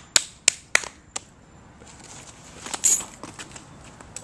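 Sharp hand claps from a two-person hand-clapping game: four quick claps in the first second or so, a little uneven. A short rustling scrape follows near three seconds in.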